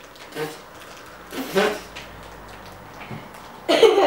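A girl's short wordless vocal sounds, a hum and then a giggle, with pauses between. The loudest comes just before the end.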